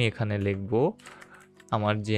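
Computer keyboard typing: a short run of key clicks starting about a second in.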